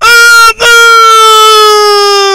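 A man's voice holding one long, loud, high sung note, broken briefly about half a second in and drifting slightly lower in pitch.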